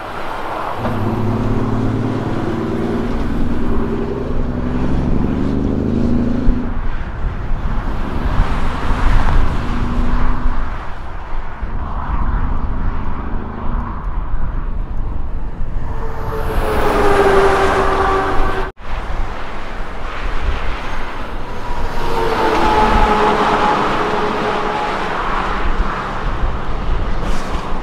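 Heavy diesel truck engines: a cab-over semi-trailer truck pulls out and accelerates over the first several seconds. Later, more trucks can be heard passing, and another semi-trailer approaches and turns near the end. The sound breaks off abruptly once, about two-thirds of the way through.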